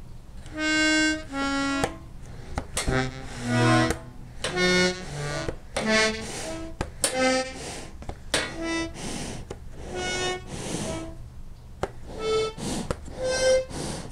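Treble reeds of an old button accordion sounded one at a time on the right-hand side: a dozen or so short, separate held notes at different pitches, with gaps and a few clicks between them. Many of the reeds don't play, though none is broken.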